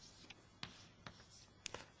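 Faint, short scratching strokes of writing on a board, a few separate strokes spread over the moment.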